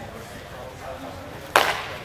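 One sharp clack of a nylon training longsword striking, about one and a half seconds in, with a short ring after it.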